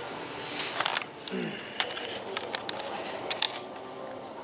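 A toddler chewing a dry cookie: scattered small crunching clicks and wet mouth sounds, with a short "mm" about a second in.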